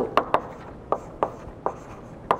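Chalk writing on a blackboard: about five sharp taps at uneven intervals as the letters are struck and drawn, with light scratching in between.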